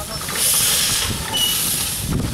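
Small steam tank locomotive moving off slowly, giving two bursts of steam hiss: a long one about half a second in and a shorter one near the end, from steam blowing out low at the cylinders, over a low rumble of the engine.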